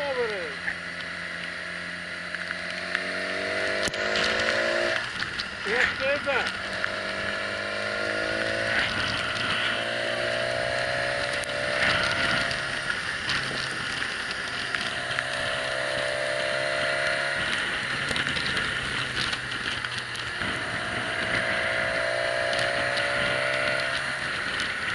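Motorcycle engine running on a mountain road, its pitch climbing gradually and then dropping back four times as the rider pulls through the revs between bends. A steady rush of wind on the camera runs throughout, with a few sharp knocks around the fifth second.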